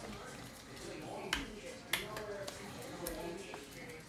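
Two sharp clicks of a hard plastic card holder being handled, a little over half a second apart.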